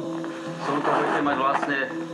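Background music with sustained held tones under a man's voice narrating in English, from the soundtrack of an expedition film.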